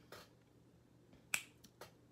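A sharp click about halfway through, followed by two fainter clicks, over quiet room tone.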